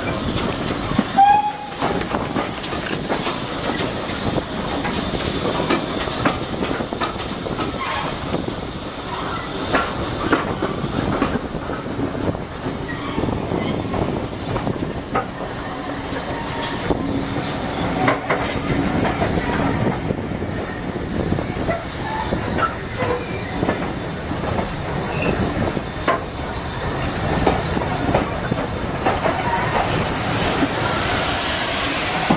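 Heritage train carriage running along the rails: a steady rumble with the clickety-clack of the wheels over rail joints, and a brief squeal with a louder clank about a second in.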